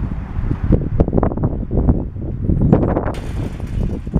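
Wind noise on the microphone, with irregular knocks and scrapes from an upended hot tub being shifted on a spa slider, including a hissy scrape about three seconds in.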